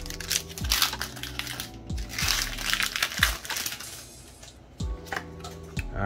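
A foil Pokémon booster pack wrapper crinkling as it is torn open, over quiet background music; the crackling dies down near the end.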